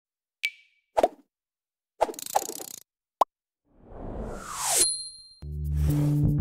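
Sound effects for an animated logo: a short ding, a pop, a brief rattle, a sharp click, and a rising whoosh that ends on a bright ring. Intro music with a bass line starts near the end.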